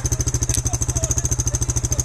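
Small engine idling steadily with a fast, even beat close to the microphone, and a short click about half a second in.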